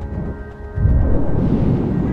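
A deep rumble of thunder that dips and then swells again under a second in, beneath music with long held notes.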